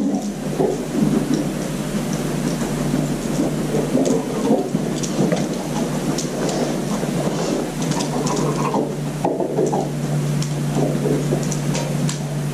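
Steady rumbling room noise under a constant low hum, with scattered light ticks throughout.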